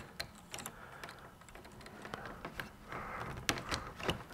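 Light, scattered clicking and rustling of small wires and insulated spade connectors being handled and pushed onto the prongs of a rocker switch panel, with a few sharper clicks near the end.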